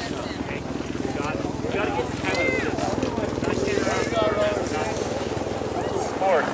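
Several people talking, unclear voices rather than clear words, over a steady low mechanical hum.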